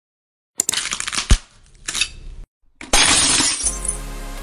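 Intro sound effects of glass breaking and shattering: a crash with a sharp hit about a second in, a short gap, then a louder shattering burst near the three-second mark. A steady low tone takes over near the end.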